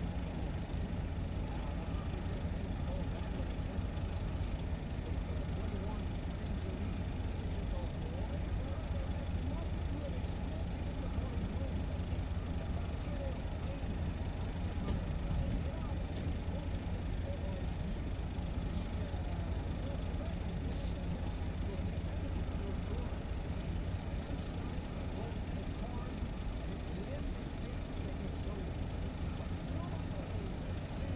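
Steady low engine rumble without change, with faint distant voices over it.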